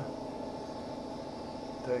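A steady machine hum made up of several fixed tones, with no rise or fall.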